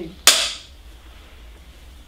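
A film clapperboard snapped shut once: a single sharp clack about a quarter second in, the sync mark for the start of a take.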